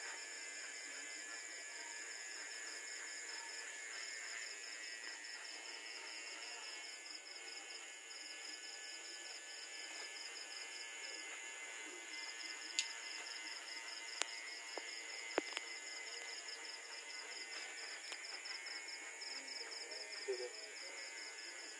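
Insects chirping in a steady, rapidly pulsing high-pitched chorus that drops out briefly a few times. A few sharp clicks come about thirteen to fifteen seconds in.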